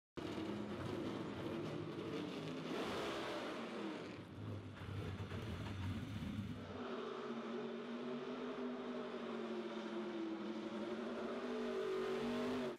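NASCAR Chevrolet SS stock car's V8 engine running hard on the street, rough and uneven in the first half, then held at a steady high pitch from about halfway.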